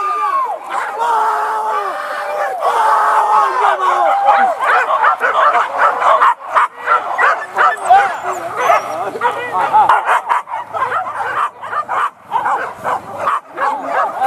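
Hunters giving long drawn-out hollers for the first four seconds, then a pack of boar-hunting dogs yelping and barking in quick, overlapping cries.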